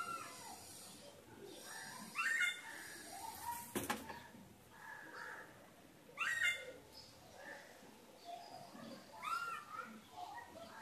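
An animal calling in the background: short rising-and-falling calls, about one every three seconds. A single sharp click comes just before the middle.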